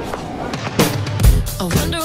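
Drum kit played along to a song's backing track. The melody or voice of the track runs on, and a little under a second in, hard drum hits come in: deep kick-drum thumps with snare and cymbal strikes.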